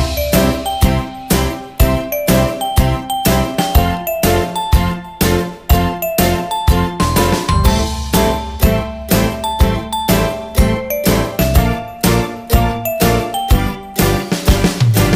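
Upbeat background music: a bright, bell-like tune over a steady beat.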